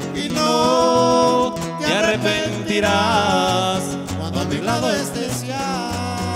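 Instrumental passage of Mexican huasteco trio music: a violin melody with vibrato and sliding notes over strummed guitars and a bass line stepping in a steady dance rhythm.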